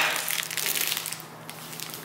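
A plastic snack-bar wrapper crinkling as it is handled, most in the first second, then dying away.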